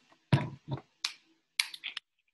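About five short, sharp clicks at irregular spacing, the last two close together near the end.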